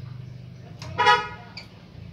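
One short horn beep, about a second in, lasting under half a second, from a motor scooter's electric horn. A faint click comes just before and just after it.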